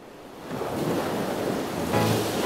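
A steady rushing noise, like wind or surf, that swells up over the first half second and then holds steady.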